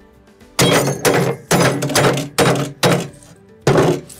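A mug inside a cloth bag being smashed with a hammer: about seven heavy blows, with the mug breaking under them. Background music plays throughout.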